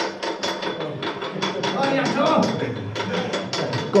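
Old rusty cast-iron mine winch being hand-cranked, its gear teeth clicking and clattering in a rapid, fairly even run of metallic clicks.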